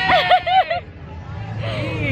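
A woman laughing: about four quick, high, rising-and-falling bursts in the first second, then fainter crowd chatter.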